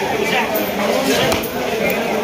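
A large knife chopping through rohu fish on a wooden log block, with a couple of sharp strikes, the clearest a little past halfway. People talk throughout.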